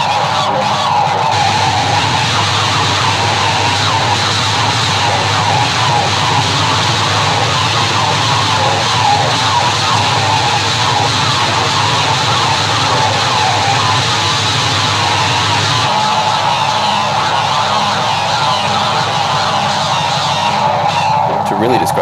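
A live punk band playing loud and distorted in a small room, with electric bass and a vocalist screaming into a handheld microphone. A steady ringing, siren-like tone sits over the noise, and the low bass drops away about three-quarters of the way through.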